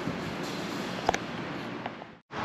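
Steady outdoor background noise, with two faint clicks about a second in and near the end.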